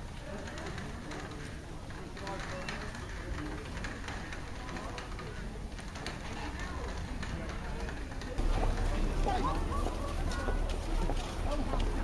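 Indistinct voices of people outdoors, faint at first. About eight seconds in, the sound steps louder, with a steady low rumble and nearer voices.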